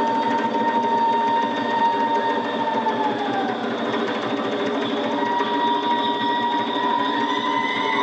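Amis folk song: a high voice holds one long note that falls away about three seconds in, then takes up a second long note from about five seconds, over lower massed voices.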